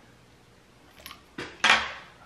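Metal clicks and clinks from handling the parts of a vintage CO2-cartridge wine bottle opener: quiet for about a second, then a few short sharp clinks, the loudest just before the end.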